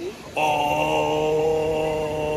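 A man's voice holding one long, drawn-out vowel at a steady pitch for about two seconds, which then slides up and down in pitch as it breaks back into speech.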